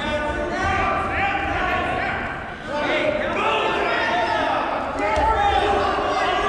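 Overlapping shouts of coaches and spectators echoing in a gym during a wrestling bout, with dull thuds of the wrestlers' bodies and feet on the mat near the start and again about five seconds in.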